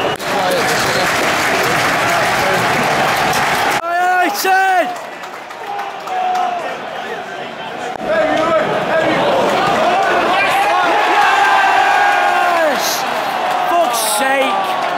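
Football stadium crowd: a loud roar and applause for the first few seconds, breaking off abruptly about four seconds in. Then crowd voices, with many voices chanting together from about eight seconds on.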